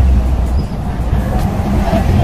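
A steady low rumble throughout.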